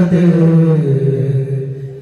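Voices chanting an Arabic salawat line in unison, holding one long note that dips lower about a second in and fades near the end, with no drum strokes.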